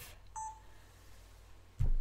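A short electronic beep about a third of a second in, then a dull low thump near the end.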